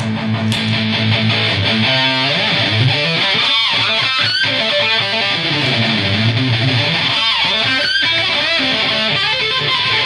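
Heavily distorted electric guitar: an Epiphone SG's bridge humbucker through an Electro-Harmonix Metal Muff distortion pedal with its Top Boost switched on, played into a Randall RG100 amp and a 4x12 cabinet. A low chord rings for about the first two seconds, then fast lead runs follow. The Top Boost lifts the treble and some of the mids.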